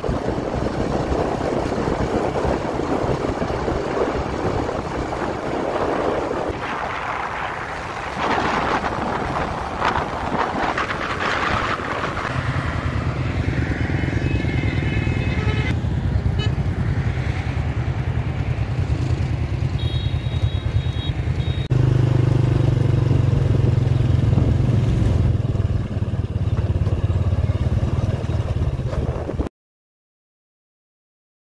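A motorbike riding along a road, its engine and road noise under heavy wind buffeting on the microphone, with a steadier low hum from about the middle on. The sound cuts off abruptly just before the end.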